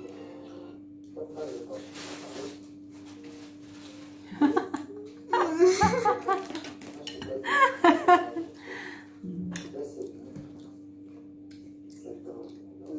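A woman and a girl laughing and talking in loud bursts for a few seconds in the middle, over a steady low hum.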